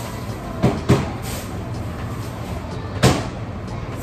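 Sharp knocks from kitchen handling, two close together about a second in and one more about three seconds in, over a steady background hiss.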